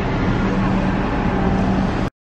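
Steady engine hum of road vehicles and buses at a bus stop, with a constant low drone, and a rumble of wind on the microphone.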